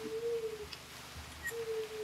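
A pigeon cooing: two low, plain hooting notes about half a second each, the second one about a second and a half in.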